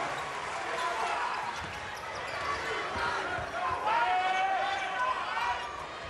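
A basketball being dribbled on a hardwood court, a run of low thumps, over steady arena crowd noise. Voices call out around four seconds in.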